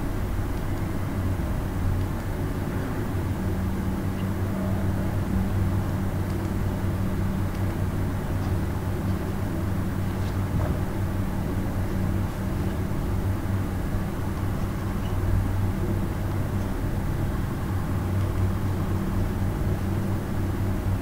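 Steady low hum over constant background noise, with no distinct events.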